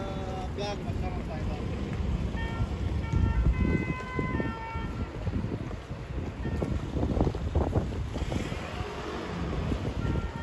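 City street ambience heard while walking: wind rumbling on the microphone and passing traffic, with passers-by talking and a few faint short high tones.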